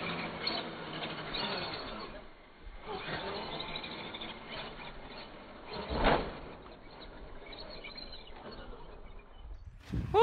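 Faint whine of a Traxxas X-Maxx RC truck's brushless electric motor as the truck flies over a dirt jump, heard over steady outdoor noise, with a short louder burst about six seconds in.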